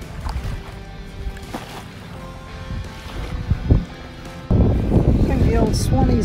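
Distant jet ski engine droning across the water, with wind rumble on the microphone. About four and a half seconds in, the sound cuts abruptly to a louder scene where a woman begins speaking.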